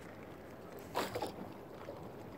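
Water and light wind noise around a small boat on open water, with one short sudden sound about a second in, followed by two fainter ones.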